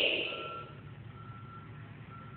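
A vehicle's reversing alarm beeping faintly at one steady pitch, about three beeps two-thirds of a second apart, over a low steady rumble. A brief rush of noise comes at the very start.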